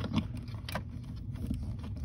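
Plastic OBD2 scan-tool connector being pushed and worked into the under-dash 16-pin diagnostic port: a few light clicks and knocks over a steady low hum.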